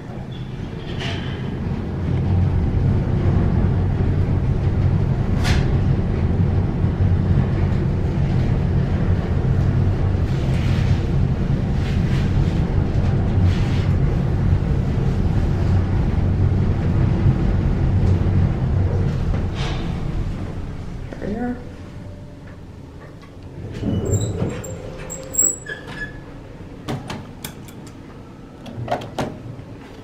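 Dover traction elevator car on a fast express run up the hoistway: a steady low rumble of the moving car that builds over the first couple of seconds and fades away about 20 seconds in as the car slows to a stop. About 24 seconds in comes a short clatter with brief high tones as the car arrives and the doors open.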